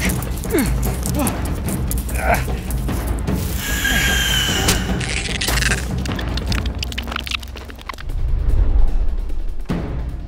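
Dramatic film score with a heavy low end, mixed with sharp crashing and smashing sound effects; a louder low swell comes near the end.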